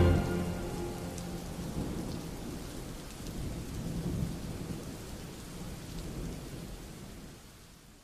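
Steady rain with low rumbling thunder that swells about halfway through. The whole thing fades out toward the end.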